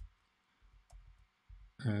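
Computer keyboard keystrokes: a sharp click at the start and a fainter one about a second in, with soft low thuds between.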